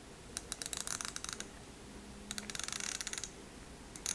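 The bezel of a Scurfa Diver One dive watch being turned by hand: two runs of rapid fine clicks, each about a second long, as the bezel ratchets round with a smooth, exact action.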